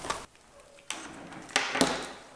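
A few light clicks and knocks of plastic-sheathed safety leads and their plugs being handled, the strongest near the end.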